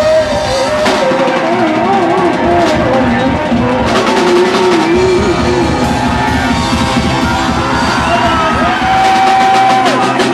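Live rock band playing loud through a club PA, with drums, keyboards and a wavering melody line that ends in a long held high note near the end. Crowd noise sits underneath.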